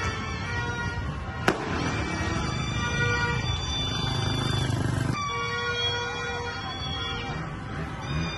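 Music with long held tones over street noise, and one sharp firecracker bang about one and a half seconds in.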